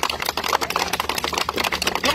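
A small group of people clapping: rapid, irregular hand claps.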